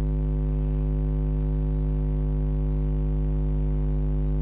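Steady electrical mains hum: a low buzz with a stack of even overtones that holds unchanged, with no other sound.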